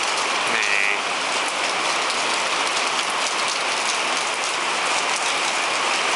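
Steady rain falling, heard as an even hiss with individual drops striking close by.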